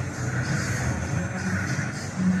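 Low, steady engine noise of a sedan creeping slowly into a parking bay, with music in the background.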